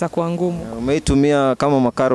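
A woman's voice making two long, drawn-out vocal sounds, each just under a second, their pitch bending up and down.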